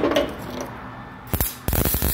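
Rustling handling noise, then a cluster of sharp clicks and knocks about a second and a half in and a few more near the end, as a worn, cracked brake pad is picked up and handled by a gloved hand.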